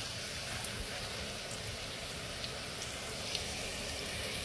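A buñuelo's thin wheat dough frying in hot lard and oil: a steady sizzle with a few small pops.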